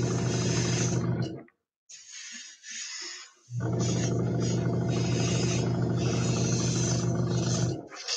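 Small airbrush compressor running with a steady buzzing hum and rushing air hiss. It stops about a second and a half in and starts again about three and a half seconds in, with a few short hisses of air in the gap.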